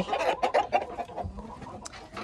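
Chickens clucking, a run of short repeated clucks in the first second, with a few sharp clicks over them.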